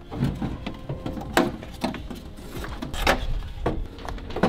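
Several short clicks and knocks of hands working in a van door's bare metal inner panel and lock parts, with the door card removed; the loudest knock comes about a third of the way in.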